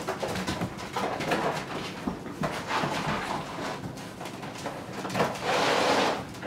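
A litter of puppies playing on a tiled floor: claws clicking and scrabbling, with small puppy squeaks and whines. A louder scraping rush comes near the end.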